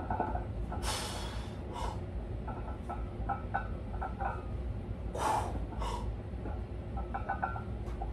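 A weightlifter's sharp, forceful breaths under a heavy bench-press barbell: two quick pairs of hissing breaths, one pair about a second in and another about five seconds in, over a steady low hum.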